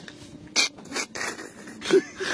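A fishing net rubbing and scraping against the wooden boat as it is handled: two short scrapes about half a second and a second in, then a longer rasping stretch.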